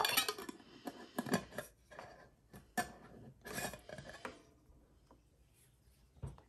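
Coins clinking inside a glass jar as it is handled and its screw lid is put on, a run of clinks, knocks and scrapes that stops about four seconds in.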